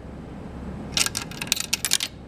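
A nickel dropping through the mechanical coin changer of a vintage Cavalier Coke machine. Starting about a second in, a quick run of clicks lasts about a second as the coin trips the flipper mechanism and drops into the nickel holder. As the first of two nickels toward the 10-cent price, it does not yet unlock the bottle rack.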